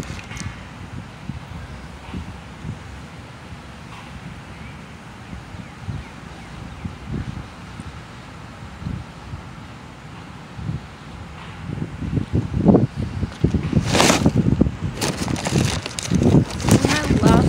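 Wind rumbling on the microphone in irregular gusts, growing louder over the last few seconds.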